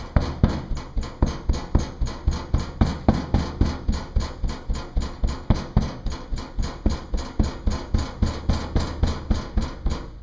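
Metal hand rammer pounding Petrobond oil-bonded foundry sand into a wooden flask: steady, even thuds about three a second, packing the sand hard around the pattern for casting. The pounding stops at the very end.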